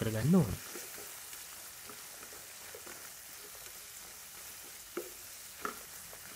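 Ash plantain cubes, onion and green chillies sizzling in a wok, with a steady soft hiss, while a wooden spatula stirs them, giving a few faint scrapes and knocks.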